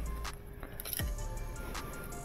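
Soft background music with steady held notes, over a few light metallic clicks from pliers and a clutch spring being handled.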